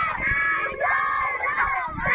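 A group of schoolchildren chanting a rally slogan together in loud unison, with a short break in the chant near the end.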